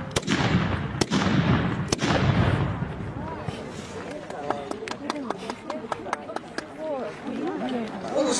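Japanese matchlock muskets (tanegashima) firing one after another: three loud reports about a second apart in the first two seconds, each followed by a rolling echo.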